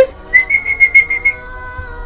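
A woman whistling one high note with a quick flutter for about a second, calling out for someone, over soft held background music.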